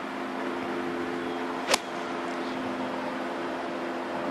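A golf iron striking the ball on a fairway approach shot: one sharp crisp click a little under two seconds in, over a steady low hum.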